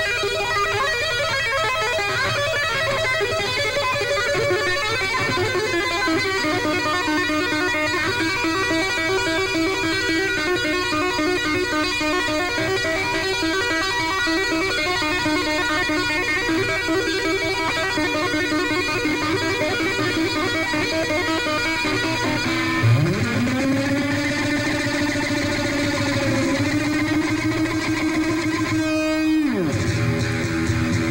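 Unaccompanied electric guitar solo: fast two-handed tapped arpeggios repeating in rapid runs. About three-quarters of the way in, a note is bent up with the whammy bar and held. Near the end it is dived steeply down.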